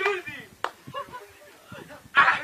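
A single sharp knock about two-thirds of a second in, between men's voices.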